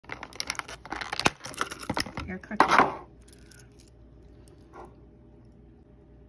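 Clear plastic bag crinkling and crackling as it is handled around a small keychain figure, busy sharp crackles with a louder burst near the end, stopping about three seconds in.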